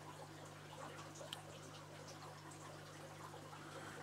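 Faint room tone of a shrimp-tank room: a steady low hum with a light trickle of water from the tanks' equipment, and a few small ticks.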